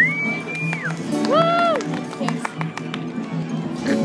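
A high whistle held for nearly a second that drops off at the end, then a short voiced whoop that rises and falls, over a steady low pulsing hum.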